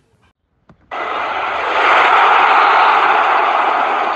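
A loud editing sound effect for a title-card transition: a rushing noise without pitch that starts suddenly about a second in, swells, and then slowly fades.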